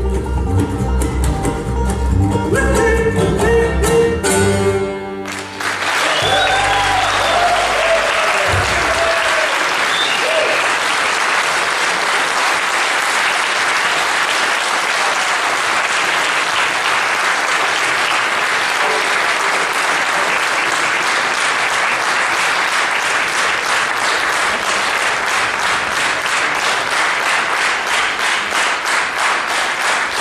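A bluegrass band of banjo, acoustic guitar and upright bass plays the last bars of a song, ending about five seconds in. An audience then applauds steadily, with a few cheers in the first seconds of the applause.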